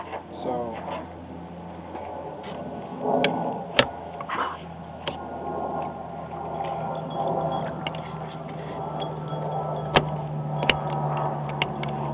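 A butter knife and a thin wire hook worked into the base of a pickup truck's vent window, scraping and tapping against the metal frame and glass. There are three sharp clicks, one about four seconds in and two close together near the end, over a steady low hum.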